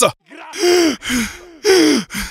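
A person's breathy, gasping cries: three in a row about half a second apart, each falling in pitch. They come straight after the music cuts off.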